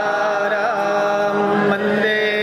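Devotional arti music: a held, chant-like melody with a small pitch bend a little after the start, over a steady low drone.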